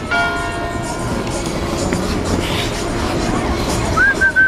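Busy outdoor ice rink: a steady wash of skates on the ice and background voices. A short held tone sounds briefly at the start.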